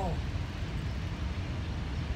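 A steady low rumble of outdoor background noise, with no distinct event standing out.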